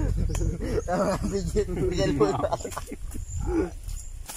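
Several young men talking and laughing close by, with a low rumble under the voices.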